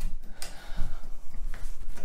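Shower-curtain tension rod being twisted and worked into place overhead, giving a few sharp clicks as the rod and its hooks shift.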